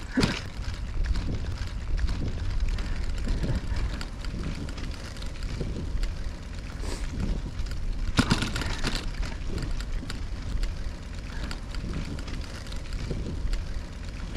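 Riding noise from a bicycle on a paved lane: a steady low rumble of wind on the microphone and tyres on the road surface, with a few small clicks and a brief rattle about eight seconds in.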